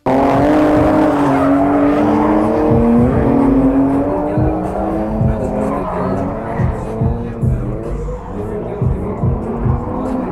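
Drift car sliding around a skid pan: its engine is held high in the revs, with the note rising and dipping, over tyre squeal. Wind buffets the microphone in repeated low thumps through the second half.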